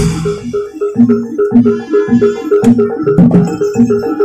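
Javanese gamelan accompaniment for a barongan dance: pitched metal mallet instruments repeating a short pattern over low drum strokes at a steady, even beat of about two a second.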